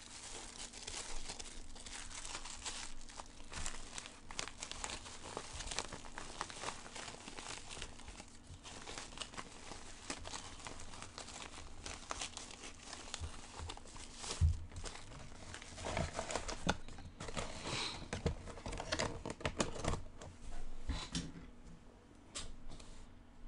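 Clear plastic wrap crinkling and tearing as it is peeled off a baseball by hand. There is a single sharp thump about two-thirds of the way through.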